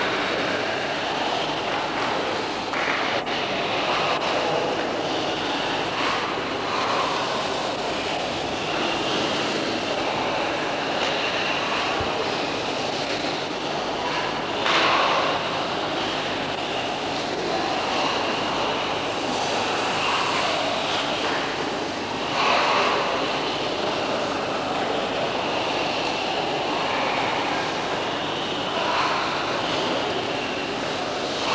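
Steady noisy ambience of a large hall, heard through an old camcorder's microphone, with indistinct voices and a few short louder bursts, the clearest about fifteen and twenty-two seconds in.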